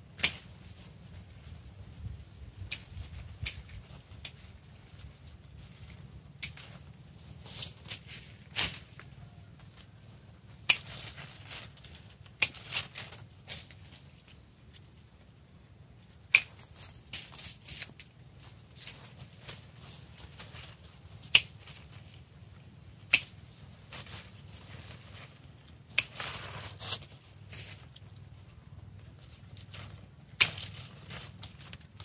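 Hand pruning shears snipping the small branches of a young yellow apricot (mai vàng) tree: about a dozen sharp snips at irregular intervals, with brief rustling of leaves around some of them.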